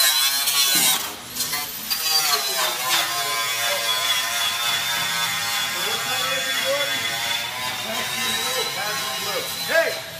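A power tool runs steadily with a high whine while undercoat and seam sealer are stripped from the car body. The pitch steps down slightly about two and a half seconds in. Voices can be heard behind it.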